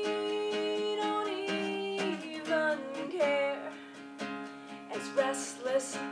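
Acoustic guitar strummed steadily under a woman singing long held notes that slide between pitches, in a live two-person acoustic performance.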